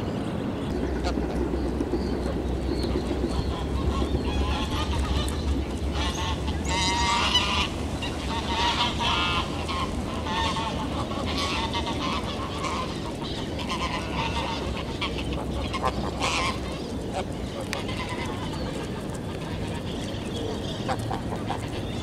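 Domestic geese honking, a run of repeated calls that comes in clusters through the middle of the stretch and thins out toward the end.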